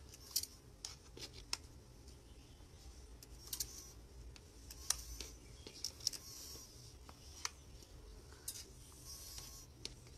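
A small hand-trigger spray bottle squirting water onto potting soil, in short, faint spritzes at irregular intervals, about ten in all.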